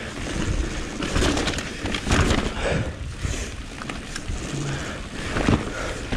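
Mountain bike riding fast down a dirt forest trail: tyres rolling over packed dirt and roots, with repeated knocks and rattles from the bike over the bumps.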